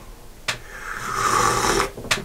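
A person slurping a sip of coffee from a mug: a short click about half a second in, then a noisy slurp lasting just over a second that grows louder before stopping.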